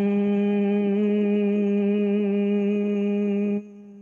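A woman's long, steady closed-mouth hum on one held pitch: the humming-bee breath (bhramari pranayama), sounded through one slow exhalation. It drops off sharply about three and a half seconds in and trails away softly.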